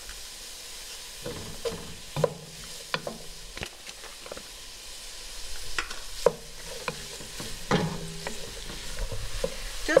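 Diced carrots, celery and onion sizzling as they sauté in butter and olive oil, while a wooden spoon stirs them, scraping and knocking against the pot in scattered clicks.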